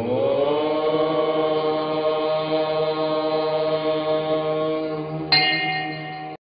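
One long chanted note held on a steady pitch, sliding up slightly as it begins. A bright high tone joins it near the end.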